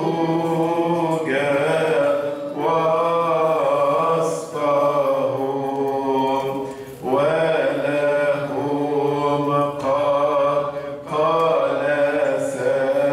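A man chanting a church hymn solo into a microphone: long, slowly winding held notes, in phrases of a few seconds with short breaks between them.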